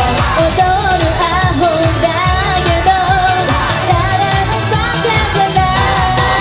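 Live J-pop performance: female voices singing a melody over a pop backing track with a steady drum beat.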